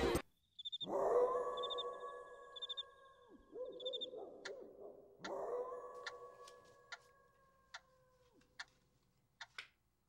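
A dog howling twice in long held notes, each sliding up at the start and dropping off at the end. Faint high chirps come during the first howl, and sharp ticks in the second half.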